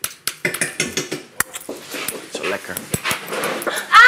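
Indistinct background talk in a small room, with scattered sharp clicks and knocks of things being handled on a table. A loud call with a falling pitch starts right at the end.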